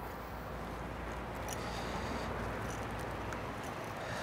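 Steady outdoor background noise of wind and water around a small boat, with a few faint clicks.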